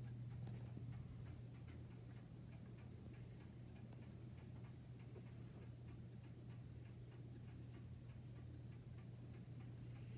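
Antique German pendulum wall clock ticking faintly and steadily: its escapement is running. The ticking sits over a low steady hum.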